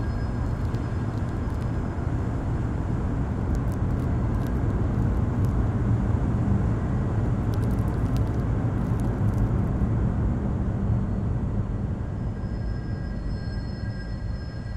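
A steady low rumble with faint high ringing tones, which fade early and return near the end, and a few faint clicks in the middle.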